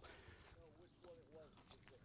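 Near silence, with a few faint, short voice-like sounds in the distance.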